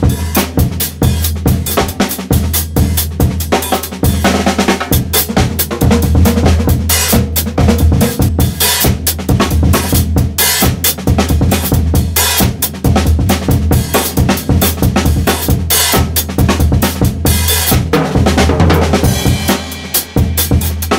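Acoustic drum kit played live in a breakbeat groove: kick drum, snare and cymbals hit in a steady, dense rhythm without a break.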